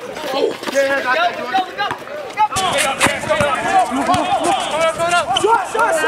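Several voices shouting and calling out over one another during a basketball game, with short knocks of the ball on the court. The sound changes abruptly about two and a half seconds in.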